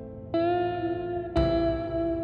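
Instrumental post-rock music: electric guitar chords ringing out with reverb and echo. A new chord is struck twice, once shortly after the start and again a little past halfway.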